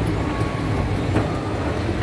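Steady low rumble of a shopping-mall escalator running, with a single faint click about a second in.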